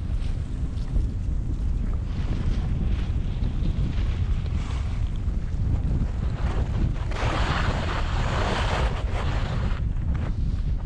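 Wind buffeting the microphone of a skier's camera during a downhill run, a constant low rumble, with skis hissing over the snow. The hiss swells for a few seconds from about seven seconds in.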